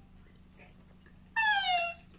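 A single short, high-pitched cry a little past the middle, sliding slowly down in pitch, over a faint steady low hum.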